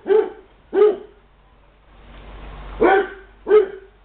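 A dog barking in play: four short barks, two in the first second and two more about three seconds in.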